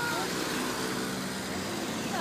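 Passing road traffic: cars going by on the street beside the pavement, a steady sound of engines and tyres.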